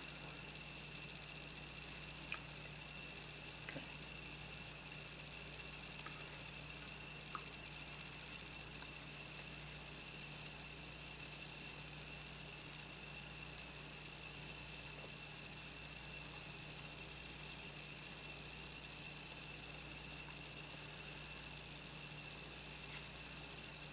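Quiet steady electrical hum with a faint high whine and hiss, broken by a few faint small ticks now and then.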